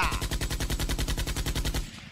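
Machine-gun burst sound effect: rapid, evenly spaced shots lasting nearly two seconds, cutting off just before the end.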